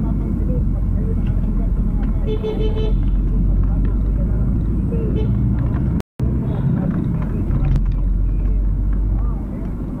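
Steady low rumble of a car's engine and tyres heard from inside the cabin while driving, with a short car-horn toot between two and three seconds in. The sound cuts out for an instant about six seconds in.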